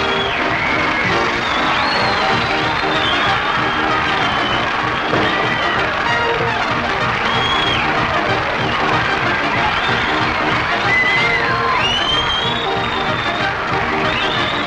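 Studio audience applauding and cheering over a band playing entrance music, loud and steady throughout.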